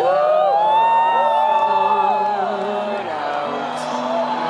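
Crowd whooping and cheering in many overlapping rising-and-falling cries that die down after about two and a half seconds, over slow live piano accompaniment.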